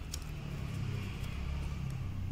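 A few faint snips of small scissors cutting paper, over a steady low rumble.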